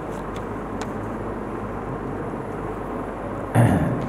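Steady background noise of the room, a constant hiss and low hum, with a few faint ticks early on as he handles his text. A short burst of voice comes near the end.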